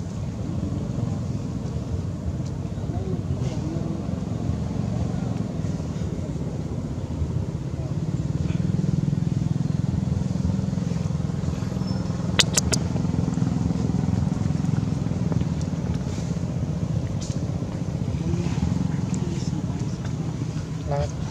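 Steady low rumble of a motor running nearby, a little louder in the middle, with faint distant voices and a brief sharp click a little past the middle.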